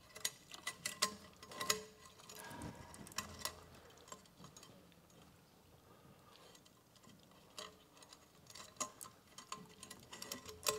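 Faint, scattered clicks and ticks of a thin steel line knocking against a metal wall bracket as it is tied off by hand, in two clusters with a quieter lull in the middle.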